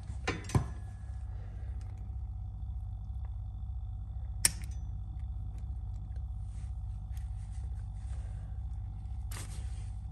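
Adjustable bed base's massage vibration motor running with a steady low hum. A sharp click comes about four and a half seconds in, and a short rustle near the end.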